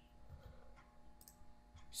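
Faint computer mouse clicks, a few short ones about a second in, against near-silent room tone.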